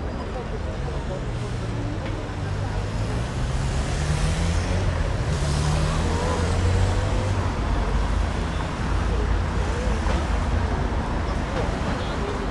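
Street ambience dominated by a motor vehicle's engine running close by, its low hum rising in pitch over the first few seconds and holding steady through the middle, with voices of passers-by.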